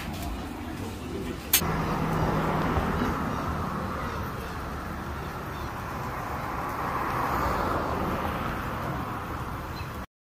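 Outdoor street ambience: steady road traffic noise from passing vehicles with a low hum, swelling slightly around seven to eight seconds in. A sharp click about a second and a half in.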